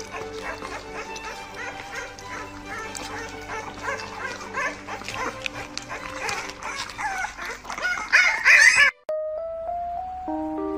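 A small puppy making quick high-pitched little cries and yips over background music, growing loudest near the end. The sound cuts off abruptly about nine seconds in, and a few stepped music notes follow.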